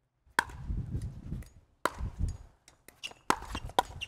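Pickleball paddles striking the plastic ball in a rally: sharp, hollow hits about a second and a half apart at first, then quicker near the end, with a few lighter clicks between.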